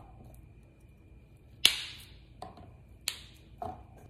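Fresh asparagus spears snapped in half by hand: two sharp snaps about a second and a half apart, with a couple of softer knocks in between and after.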